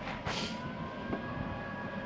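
Power liftgate of a 2022 Lexus LX 600 opening: a short release hiss about a quarter second in, then the liftgate motor's steady whine, its pitch climbing slightly as the tailgate rises.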